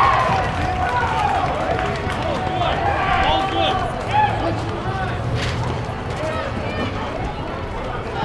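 Untranscribed voices and shouts of players and spectators around an outdoor basketball court, with a few sharp knocks from play on the concrete.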